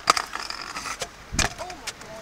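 Stunt scooter hitting a concrete ledge with a sharp clack and scraping along it in a grind with a thin screech, then a heavy thud about one and a half seconds in as the scooter drops off onto the path: a failed grind.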